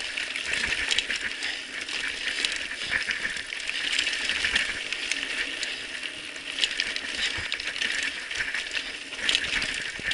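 Mountain bike riding over a loose, rocky trail: a continuous dense rattle and clatter of tyres on stones and the bike shaking, heard through a handlebar-mounted camera. Small clicks and knocks come in quick succession, a little louder near the end.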